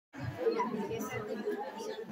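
Faint chatter of several people talking among themselves in a room.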